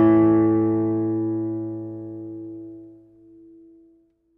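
Closing guitar chord of background music ringing out and slowly dying away, fading over about three seconds with one note lasting longest.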